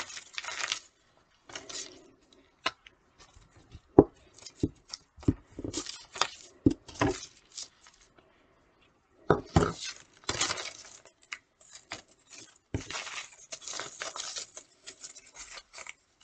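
Sheet of paper rustling and crinkling as it is handled, glued along its edge and pressed into a tube, with irregular small taps and knocks on the tabletop. The handling stops for a moment about halfway, then the rustling picks up again and grows denser.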